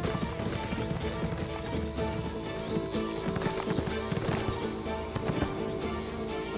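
Horses galloping on a dirt track, a quick, uneven patter of hoofbeats, under a musical score with sustained tones.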